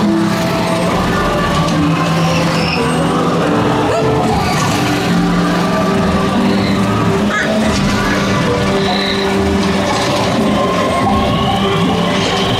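The ride's ambient soundtrack: long, sustained low musical tones with short high chirps scattered over them.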